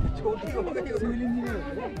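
Several people talking at once, their voices overlapping in casual chatter.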